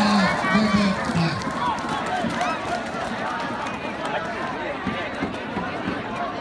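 Large outdoor crowd of spectators, many voices talking and calling out over one another. A loud crowd roar dies away in the first second, leaving steady chatter.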